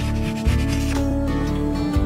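Pen scratching on paper in short strokes as handwriting is written, over background music with sustained tones.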